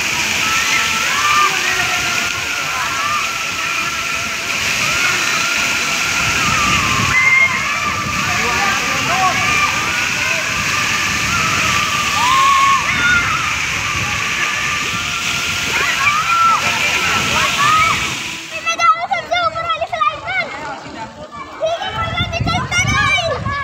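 Water pouring and splashing steadily from a water-park splash play structure into a shallow pool, with children's shouts over it. About three-quarters of the way in the water noise stops suddenly and children's voices are heard close up.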